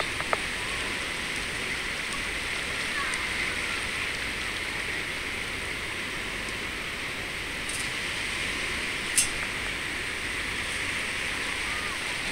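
Steady rush and slosh of shallow water being stirred as a metal detector's search coil is swept back and forth through it, with one brief sharp click about three-quarters of the way through.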